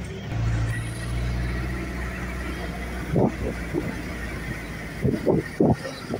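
A Toyota van's engine running with a low, steady rumble as it passes close by, fading after about three seconds. A few brief calls follow near the end.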